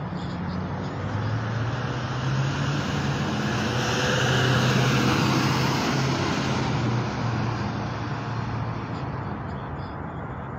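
A road vehicle passing by: its engine and tyre noise grow louder to a peak about halfway through, then fade away.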